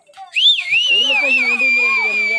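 A person whistling loudly: one long high whistle that starts about a third of a second in, swoops up, wavers, then holds a steady note, over voices.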